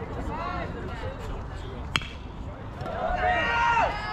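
A baseball bat strikes the pitched ball about two seconds in: one sharp, short crack. About a second later people start shouting loudly as the batter runs.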